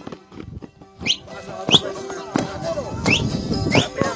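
A dancing festival crowd with voices over music that holds steady tones. Short, sharp, rising whistles cut through in two quick pairs, about a second in and again just past three seconds.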